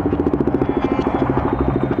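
KTM Duke motorcycle's single-cylinder engine running at low revs in slow traffic, with a fast, even pulsing beat.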